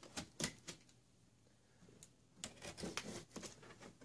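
Hands handling a large cardboard box, making faint scattered clicks and taps on the cardboard: a few in the first second, then a pause, then a quick run of them in the second half.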